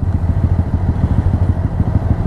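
Motorcycle engines idling steadily at a standstill, with an even low pulsing beat.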